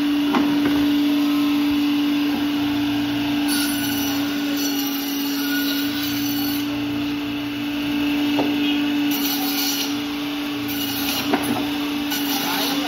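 Electric band saw running with a steady hum as it cuts a large catla fish into steaks, with a few short knocks.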